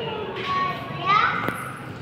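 A small child's voice making brief playful sounds while at play, with a short rising call a little after a second in. A single light tap comes about a second and a half in.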